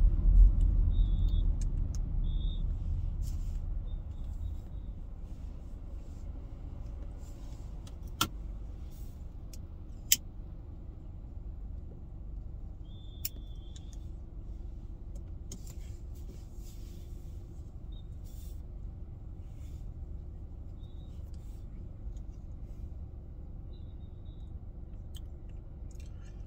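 Low road and engine rumble inside a moving car's cabin, louder at first and easing off over the first few seconds, then steady. There are two sharp clicks near the middle and a few faint, short, high beeps.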